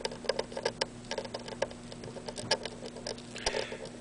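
Small irregular crackles and ticks as a hot soldering iron melts solder and paste flux into the board's vias, the flux spitting at the tip, over a steady low hum.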